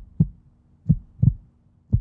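Heartbeat sound effect: low double thumps in a lub-dub pattern, about one heartbeat a second.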